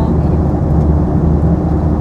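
Steady low drone of an airliner's cabin in flight.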